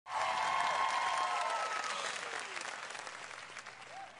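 Audience applauding and cheering, loudest at the start and dying away over the next few seconds.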